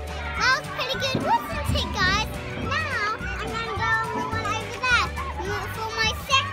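Young children's high voices calling out and squealing as they play, over steady background music.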